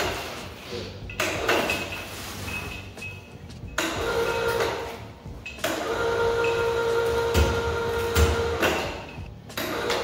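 Electric chain hoist lifting a truck cab: its motor runs twice, each time for about three seconds, with a steady whine, and two dull knocks come near the end of the second run.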